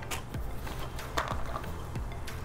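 Light clicks, taps and a soft rustle of small items being handled and rummaged for in a backpack, over a low steady hum.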